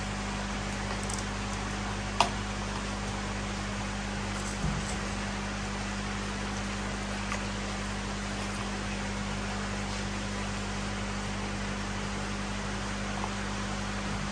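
Steady rushing hiss of churning, bubbling water in a koi holding vat, with a low steady hum underneath. A sharp tap sounds about two seconds in and a softer knock near five seconds.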